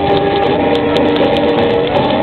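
Live song music over the loudspeakers between sung lines: one chord held steady, moving to a new chord near the end.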